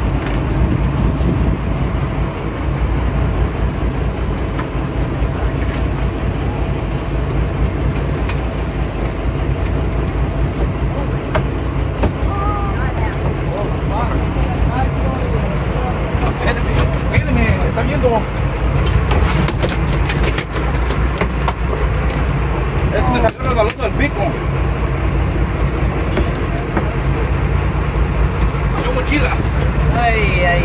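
Sportfishing boat's engine running with a steady low drone. Voices call out now and then, and there are a few sharp knocks and clatters about two-thirds of the way through.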